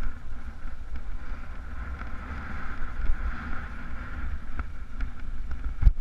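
Wind buffeting the camera's microphone as a mountain bike rolls fast over a rough dirt track, with scattered rattles and clicks from the bike and a loud knock near the end as it hits stony ground.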